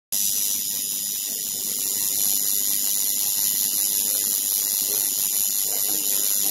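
Coil tattoo machine buzzing steadily while needling skin, cutting in abruptly at the start.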